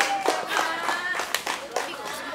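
Children's voices calling out, with several sharp hand claps scattered through.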